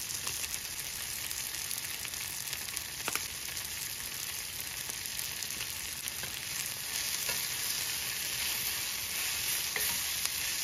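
Sliced bell peppers and onions sizzling in a cast-iron skillet, a steady hiss with a few light clicks, the sharpest about three seconds in.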